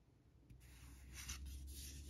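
Faint rustle of paper trading cards sliding against each other as the stack in hand is shuffled to the next card, starting about half a second in.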